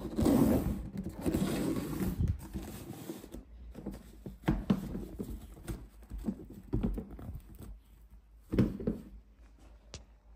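A black Nike Air Huarache sneaker being handled and turned on its cardboard shoebox. Its leather and rubber rustle and scrape against the box, loudest over the first two seconds, then a few softer scuffs and knocks follow, the last of them close to the end.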